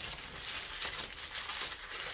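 A plastic USPS bubble mailer crinkling and rustling as it is folded and pressed down into a cardboard box: a quiet, scattered run of small crackles.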